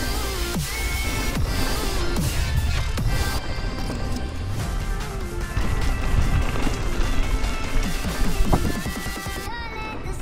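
Electronic music soundtrack with a steady beat and synth lines.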